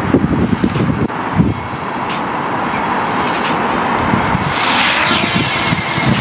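Small folding camera drone's propellers spinning up about four and a half seconds in, a loud high hiss with a faint rising whine as it lifts off. Before that, wind rumbles on the microphone.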